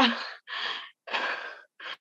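A woman breathing heavily after a short "uh": about three loud, breathy exhalations in quick succession, with no voice in them.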